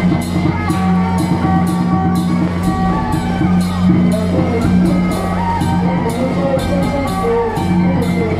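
Chinese temple procession band playing: suona horns carry a wailing melody over a steady drone, with drum, gong and cymbal strikes keeping a regular beat.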